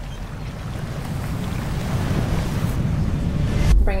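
Ocean surf breaking on a sandy beach: a steady rushing wash that swells louder toward the end.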